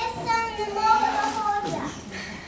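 A child speaking in a high voice: lines spoken on stage.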